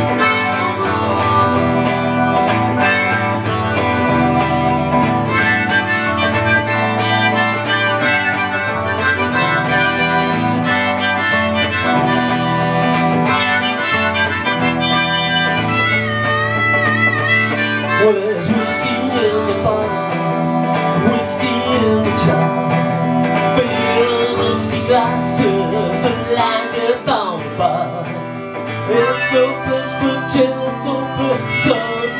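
Live band playing an instrumental alt-country passage: strummed electric guitar, harmonica and synthesizer keyboard, with a wavering harmonica or synth line about halfway through.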